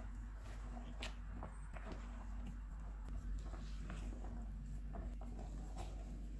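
Spatula folding whipped cream with chopped nuts and candied fruit in a mixing bowl: quiet, irregular light taps and scrapes of the spatula against the bowl, over a low steady hum.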